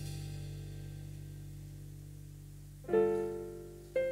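Yamaha electric keyboard playing a solo piano passage. A held chord slowly fades, then a new chord is struck about three seconds in and another right at the end.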